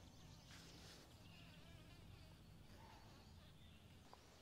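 Near silence with a faint, steady low buzz from a carpenter bee on the ground in the grass, downed by permethrin spray.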